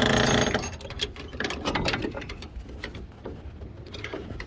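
Metal door hold-back hook on the side of a freight trailer clinking and rattling as it is handled, a quick run of small metallic clicks, after a loud rush of noise in the first half second.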